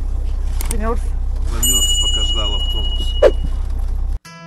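Steady low rumble of a coach bus engine heard inside the passenger cabin, with a thin high tone for about two seconds and a single sharp knock about three seconds in.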